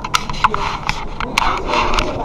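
Rubbing and scratching handling noise on the camera's microphone as it is carried at a walk, with sharp irregular clicks.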